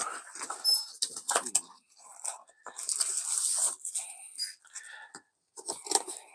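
Cardboard packaging being handled: a small paperboard box's flap opened with scrapes and clicks, and a plastic bag crinkling as the power bank inside is pulled out, loudest about halfway through.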